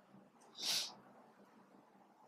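A single short, sharp breath through the nose, a sniff, lasting under half a second and starting a little over half a second in.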